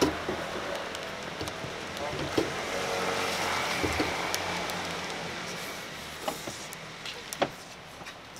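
Road traffic passing on a wet street: tyre noise on the rain-soaked road swells around the middle and then fades. Laughter at the start and a few small clicks.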